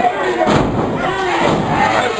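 A wrestler slammed onto the wrestling ring mat: one heavy thud about half a second in, over crowd voices and shouting.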